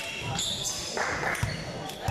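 A volleyball bounced by hand on a hard sports-hall floor: dull thumps about a second apart.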